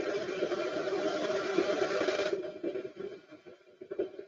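Steady rush of air and fan noise from the venturi valve test ductwork as the duct static pressure is raised. The hiss cuts off suddenly about two seconds in, leaving a fainter, lower noise.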